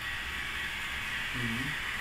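Model train locomotives running on the track: a steady whirring hiss with a faint thin whine, and a brief faint murmur about one and a half seconds in.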